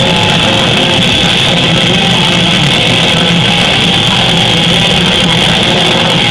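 Live black metal band playing at full volume: distorted electric guitars, bass and drums in a dense, unbroken wall of sound.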